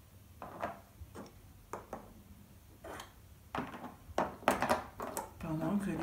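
Small plastic Playmobil figures and toy animals being set down and shuffled on a tabletop: a scatter of light clicks and taps, closer together about four to five seconds in.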